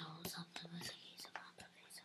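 Faint whispering with a few short, sharp clicks of a computer mouse, over a low steady hum.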